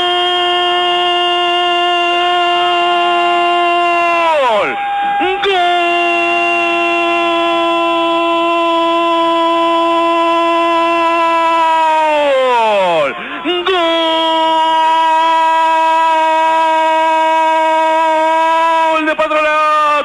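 Male radio football commentator's long held goal cry, "gol" stretched over three breaths of several seconds each. Each cry holds one pitch and drops off at the end of the breath.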